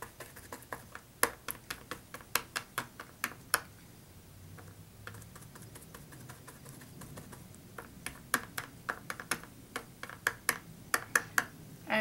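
Small brush dabbing colour onto a metal embellishment: a run of light, sharp taps a few per second that pauses about four seconds in and resumes around eight seconds.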